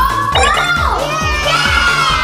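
Children shouting and cheering excitedly, over background music with a steady beat.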